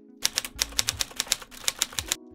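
Typewriter keystroke sound effect: a quick, uneven run of sharp key clacks, about eight a second, marking an on-screen caption typing out letter by letter.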